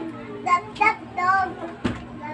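A child's high-pitched voice sings a few short phrases in the background over a steady low hum. Near the end there is a single sharp click of a spoon against a ceramic plate.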